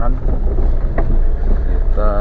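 Wind buffeting the microphone as a steady low rumble, with a voice-like sound faint beneath it and a single click about a second in.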